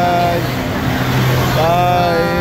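Drawn-out "bye" calls from people's voices, one at the start and another near the end. Between them a road vehicle's engine runs past with a steady low hum.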